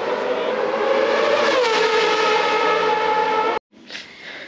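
Formula One car engine running at high revs in a tunnel, a high steady note whose pitch drops about one and a half seconds in as the car passes. The sound cuts off abruptly near the end.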